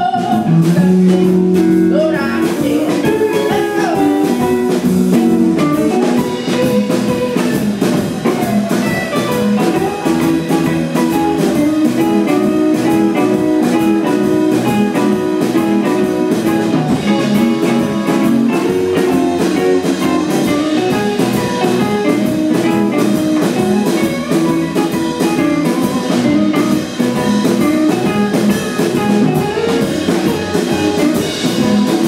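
A live blues band playing, with a female voice finishing a sung line in the first couple of seconds, then an instrumental break led by a semi-hollow electric guitar over the band.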